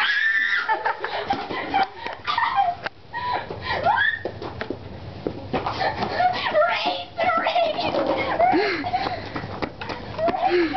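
Young girls' voices shouting, screaming and giggling, excited and without clear words.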